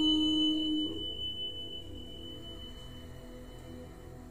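A woman's chanted note, the held end of the mantra, sustained steadily and then stopping about a second in. A thin high ringing tone goes on under it and fades out near the end.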